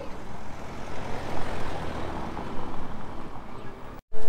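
Street traffic: a car driving past on a cobblestone street, its tyre and engine noise swelling about a second in over a steady low rumble.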